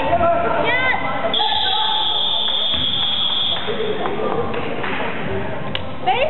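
Indoor basketball game: a ball bouncing on the wooden court amid players' voices, with a steady high-pitched whistle held for about two seconds, starting a little over a second in.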